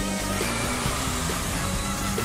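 Upbeat theme music for a TV title sequence, with a steady bass line and a hissing sweep effect laid over it.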